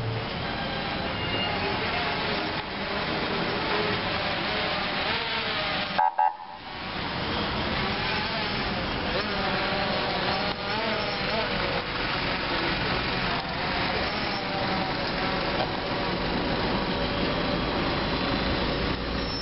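Slow procession vehicles, an escort car and a hearse truck, driving past with engines running, mixed with people's voices. The sound breaks off briefly about six seconds in.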